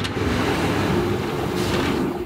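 Water jets spraying steadily inside an automated surgical-instrument washer-disinfector, hitting wire-mesh instrument baskets and the glass door.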